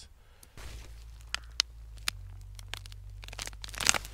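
Jerusalem artichoke roots and stems snapping and tearing as the plant is pulled out of the soil by hand: a few sharp cracks through the middle, then a louder burst of ripping and crumbling soil near the end as the clump comes partly free.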